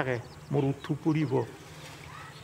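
A man speaking in Assamese in short phrases, with a pause in the last half second.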